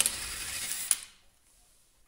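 Cordless impact driver hammering a car wheel's lug nut for about a second, then stopping.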